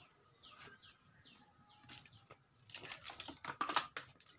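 A small bird chirping, a short falling chirp repeated a few times a second, followed in the last second or so by a quick run of clicking and clattering.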